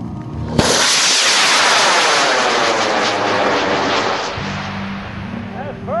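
AMW K475 White Wolf high-power rocket motor igniting with a sudden onset about half a second in, then a loud rushing roar that fades over several seconds as the rocket climbs away, its tone sweeping downward as it rises.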